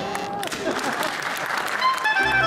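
Audience applauding, with a voice heard briefly at the start.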